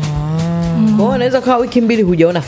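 A person's voice holding one long, low, steady drawn-out sound for just over a second, with a second voice joining in, then breaking into talk. A faint music beat plays underneath.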